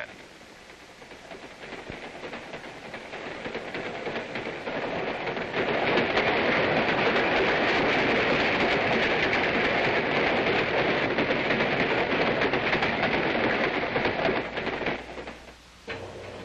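A train passing at speed: rushing noise and rapid wheel-on-rail clatter build up over the first several seconds, run loud and steady, then drop away shortly before the end.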